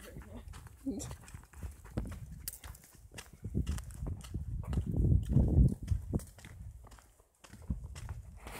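Footsteps and rustling on a forest path, with irregular knocks and a low rumble from a handheld phone's microphone being moved about, loudest around the middle.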